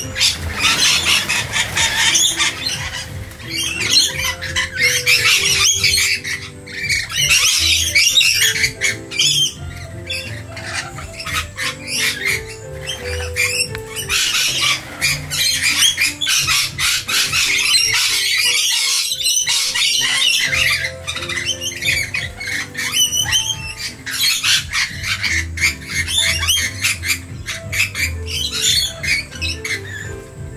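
A flock of rainbow lorikeets screeching and chattering in dense, high-pitched bursts, over background music.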